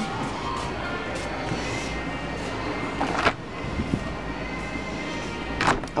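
Background music playing steadily over the hum of a large store, with two brief knocks, one about halfway through and one near the end.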